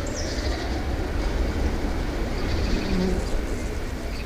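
Steady low city rumble, like traffic or rail noise, with birds chirping over it; a short low hum sounds about three seconds in.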